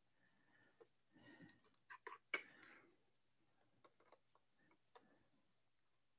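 Near silence broken by a few faint clicks and small handling rustles from hands working with small parts, the loudest pair about two seconds in.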